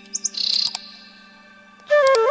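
A few quick high bird chirps and a brief twitter in the first second, with a couple of sharp clicks, then a flute melody starts up near the end.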